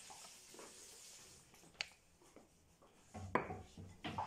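Faint handling sounds of a wooden rolling pin working dough on a marble counter, with a sharp click about halfway and a few louder knocks near the end as the pin is put down on the counter.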